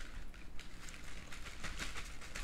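A plastic fork digging into cheesy tater tots on a paper tray liner: a run of soft crinkling and scraping clicks as the paper shifts under the fork.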